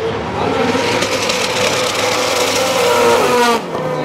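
Two drift cars sliding in tandem, their engines revving high and rising in pitch over screeching tyres. The sound drops away abruptly about three and a half seconds in.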